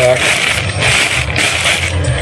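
Thin clear plastic bag crinkling and rustling as hands open it inside a cardboard box, over a steady low hum.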